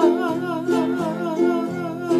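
A woman singing a Tongan song with a wavering vibrato, accompanied by a strummed ukulele and an acoustic guitar.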